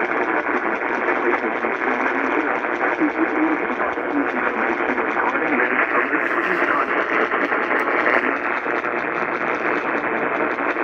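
Sangean CL-100 radio on AM 840 kHz playing a weak, barely received station: heavy static hiss fills the sound, with a broadcast voice faint beneath it.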